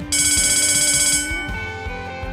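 School bell ringing for about a second, then fading out, over soft background music.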